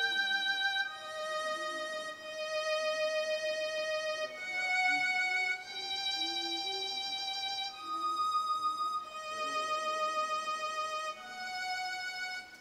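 Software violin from FL Studio's Sakura string synth playing a slow melody of long held notes, one octave up, the pitch changing every second or two.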